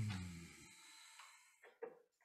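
A man's brief low vocal sound, like a hum or sigh, falling in pitch and fading within about half a second. Then quiet room tone with a short intake of breath near the end.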